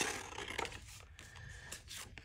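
A sheet of printed paper being handled and moved: faint paper rustling with a few light clicks and taps.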